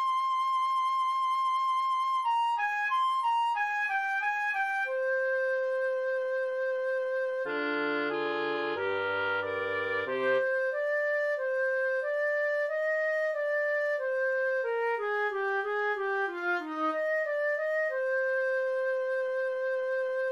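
A wind quartet, played back from notation software, in a slow Andante. A single high woodwind line opens on a long held note and then falls in short runs and sustained tones. The lower three voices, bass included, join in a brief full chordal passage a little before halfway.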